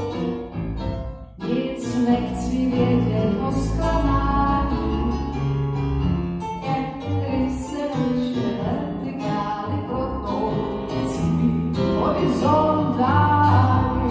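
Live music in a hall: a keyboard plays piano-like accompaniment while a woman sings into a microphone, amplified through loudspeakers.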